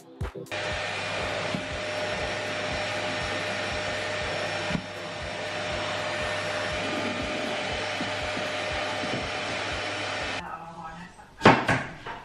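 Vacuum cleaner with a hose running steadily, a faint whine over its airflow. It starts about half a second in and cuts off near the end, followed by a single sharp knock.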